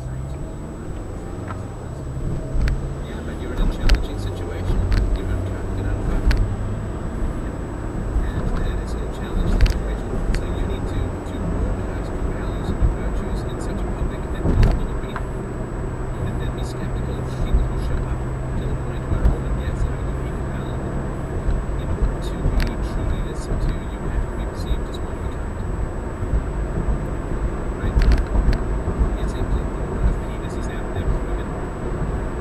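A car driving at highway speed, heard from inside the cabin: a steady engine hum and tyre road noise, with a few sharp thumps.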